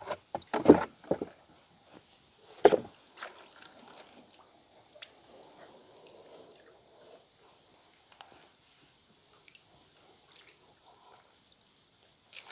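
A few knocks on wooden planks in the first three seconds, the loudest near three seconds in, then faint water sloshing with small scattered ticks as a mesh fish-trap net is lifted and handled in the river.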